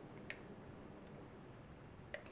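Near silence: faint room tone, with one small sharp click about a third of a second in.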